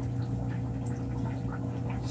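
Running aquarium equipment, most likely the tank's filter: a steady low hum with a faint wash of water noise.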